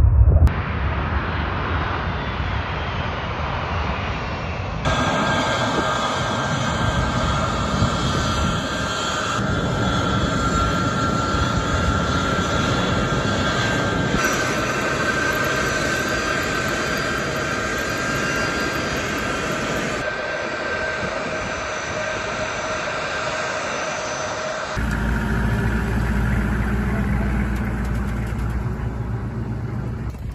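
C-17 Globemaster III turbofan jet engines running loud and steady with a high whine over a rush of air as the transport lands on a dirt strip and taxis close by. The sound jumps at several cuts, and a deeper, heavier rumble takes over for the last few seconds.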